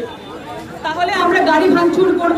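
Speech into a handheld microphone with crowd chatter around it; the voice comes in after a short lull about a second in.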